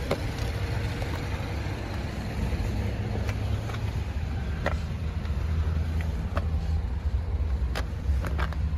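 2015 Subaru Forester's flat-four engine idling with a steady low hum, with a few light clicks of handling noise over it.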